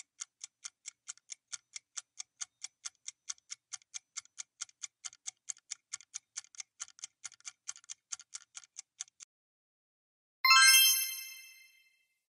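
Quiz countdown-timer sound effect: a clock ticking about four times a second, stopping about nine seconds in. A little later a bright chime rings and fades, marking time up and the answer reveal.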